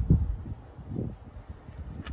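Wind buffeting the phone's microphone in low rumbling gusts, the strongest at the start and another about a second in.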